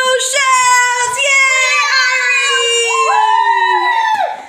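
A young girl's voice holding one long sung note that sinks slowly in pitch, with a second, higher child's voice joining in near the end.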